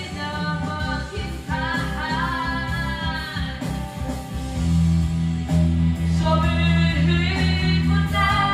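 A woman singing karaoke into a microphone over a videoke backing track. She holds a long note about two seconds in, and the backing track's bass grows louder about halfway through.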